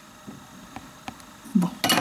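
Faint clicks and taps of small metal nail-art tools being handled: a dotting tool set down and tweezers picked up. A sharper cluster of clicks comes near the end, together with a woman's voice.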